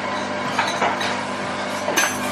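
Café room noise: a steady low hum under a general haze, with a few faint clinks of crockery.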